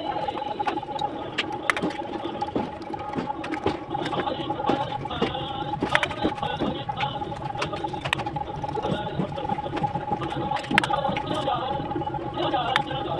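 Bricklaying with steel trowels: irregular sharp taps of trowels on fired-clay bricks and scraping of mortar, over a steady high hum.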